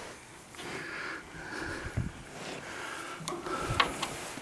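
A brown bear moving in straw against the metal bars of its cage: soft rustling, with a few sharp knocks about two seconds in and twice near the end.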